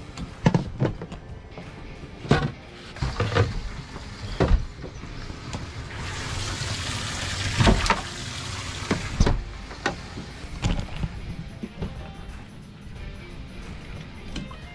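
Background music, with scattered knocks and thumps from handling on a boat. A rush of noise lasts about two seconds, starting about six seconds in.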